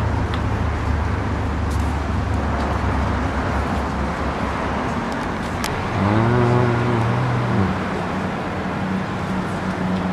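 Street traffic: a steady hum of car engines and passing vehicles. About six seconds in, a low pitched tone sounds for about a second and a half.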